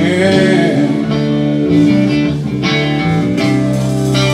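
A live blues band plays between sung lines: electric guitar over bass, keyboard and drums. Under the guitar the bass line steps from note to note, and the drums hit at a steady beat.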